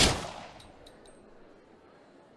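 A single gunshot sound effect: one sharp, loud crack that dies away over about half a second, followed by three faint, high clinks.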